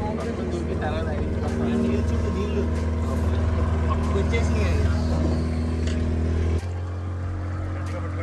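Motorboat engine running steadily with a low hum. About six and a half seconds in it drops suddenly to a quieter note.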